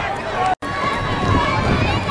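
Spectators' voices chattering together in the stands, with no single clear speaker. About half a second in, the sound cuts out completely for a moment where the video is edited.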